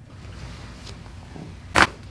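Chiropractic neck adjustment: one short, sharp crack from the neck joints near the end, over faint room noise.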